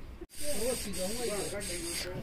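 A steady hiss with a person's voice over it, starting abruptly about a quarter second in after a brief dropout.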